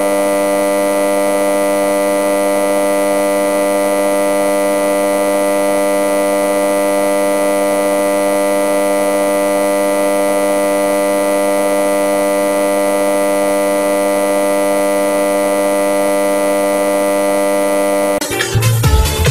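A steady electronic drone: one held chord of many tones that does not change or pulse, with no beat, ending as dance music with a heavy bass beat comes in.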